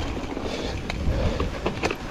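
Mountain bike rolling fast down a dry dirt trail: a steady rumble of tyres over the ground, with the rattle of the bike's parts and a few sharp clicks.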